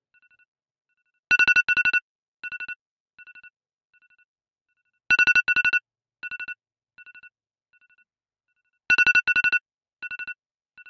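Phone alarm tone ringing: a loud burst of beeps followed by a string of quieter, fading repeats. The pattern starts over about every four seconds.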